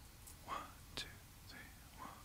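Quiet, with a couple of faint, short whispered voice sounds about half a second and a second in.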